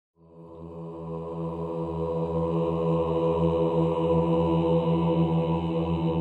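A low, sustained chanted drone in the manner of a mantra. It fades in over the first couple of seconds, then holds one pitch with a steady pulsing.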